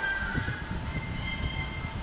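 Low, uneven rumble of a Dumbo the Flying Elephant ride vehicle circling in the air, with the ride's music playing underneath. The rumble gets louder right at the start.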